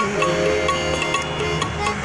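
Harmonica playing a sustained melody, with instrumental accompaniment and a regular percussion beat of short strikes under it.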